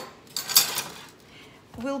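A wide metal frying pan holding raw vegetables, shifted across a hard kitchen surface: one short scrape about half a second in.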